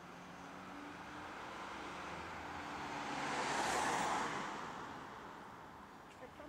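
A road vehicle passing close by: the hiss of its tyres and engine swells to a peak nearly four seconds in, then fades away.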